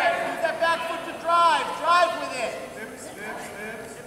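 Raised voices shouting unclear calls across a gym during a wrestling bout, the kind of coaching and cheering yelled from the mat side and stands; the loudest calls come about one and a half and two seconds in.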